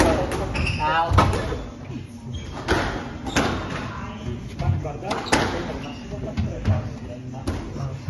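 A squash rally: sharp racket strikes and the ball smacking off the court walls, about a dozen hits at an irregular pace, ringing in the enclosed court, with footwork on the wooden floor.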